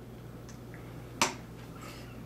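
A single sharp clack about a second in: a plastic handheld TV set down on a wooden tabletop, over a faint steady hum.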